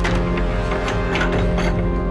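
A metal door handle rattled and its latch clicking several times as a hand works it on a wooden door, over steady background music.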